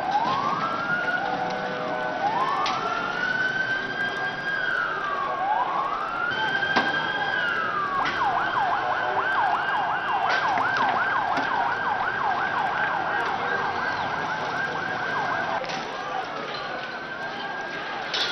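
Police siren wailing in slow rising-and-falling sweeps, switching about halfway through to a fast yelp of roughly three to four sweeps a second for several seconds, then back to a slow wail near the end. A few sharp bangs cut through it.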